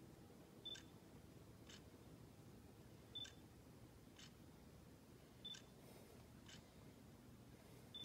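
Near silence, broken by faint clicks about once a second; every other click carries a brief high beep.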